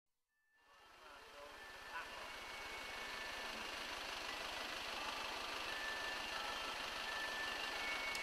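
Faint street traffic noise fading in after about a second of silence, a steady rush that grows slowly louder.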